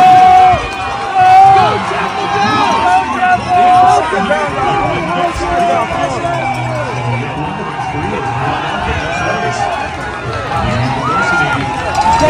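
Several people's voices talking and calling out over one another, with a laugh at the start and a voice calling "signs down".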